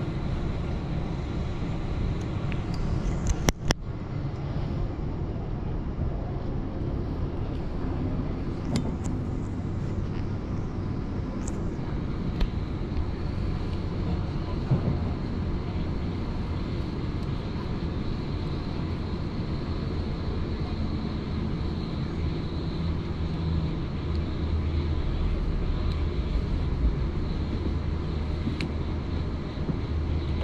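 Steady rumble of a moving electric passenger train heard from inside the carriage, with a brief sharp knock about three and a half seconds in.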